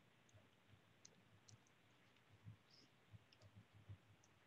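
Near silence: faint room tone with a few scattered soft clicks and small low knocks.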